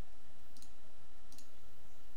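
Two light computer mouse clicks, about half a second and a second and a half in, as points of a mask are placed, over a steady low hum.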